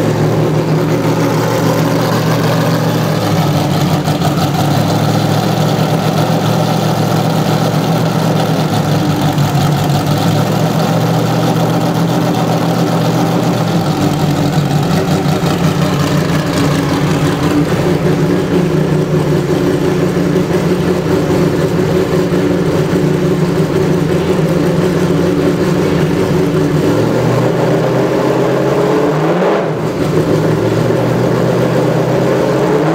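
Matech Ford GT GT1 race car's V8 idling steadily while warming up. The pitch wavers slightly with a few small blips of the throttle.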